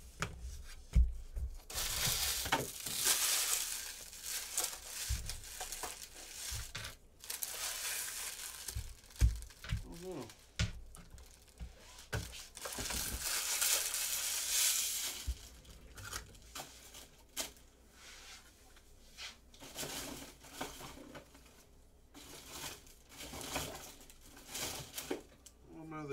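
Crinkling and crumpling of packaging being handled and cleared off a table, in two long stretches, with a few sharp thumps of objects being set down or moved.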